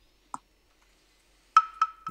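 Mostly quiet, with a soft click about a third of a second in, then three short, sharp, pitched ticks in quick succession near the end.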